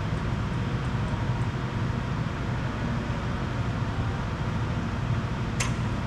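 Steady low hum with a hiss, unchanging, and one brief sharp click near the end.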